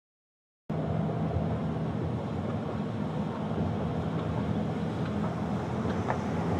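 Steady road noise and engine hum heard from inside the cabin of a moving car, cutting in suddenly under a second in after digital silence.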